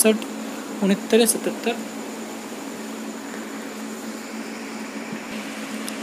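A few brief murmured words about a second in, then a steady background hum with a faint buzz running without change.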